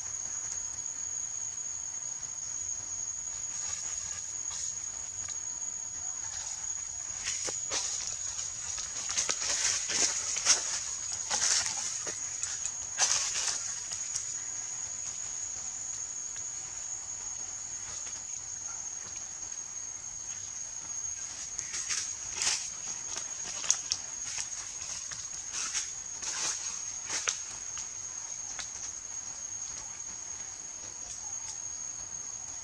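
Steady high-pitched insect drone running throughout, with two spells of brief crackling rustles, the first about a quarter of the way in and the second near the end.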